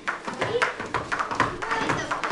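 Jump ropes slapping the foam floor mats and feet landing from skips: a quick, irregular run of sharp taps, with children's voices over them.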